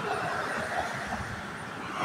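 Road traffic noise from cars driving past on the road, a steady tyre and engine hiss that eases off slightly toward the end.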